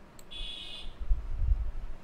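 A short, high electronic buzz lasting about half a second, followed about a second in by an uneven low rumble with a few sharp bumps.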